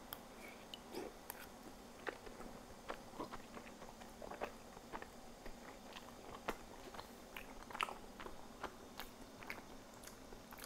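Faint mouth sounds of a person biting into and chewing a hot steamed soup dumpling: soft, wet clicks scattered irregularly.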